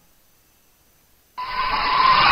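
Near silence, then about a second and a half in a rushing electronic noise effect cuts in abruptly and grows louder, as the sound of an animated intro graphic.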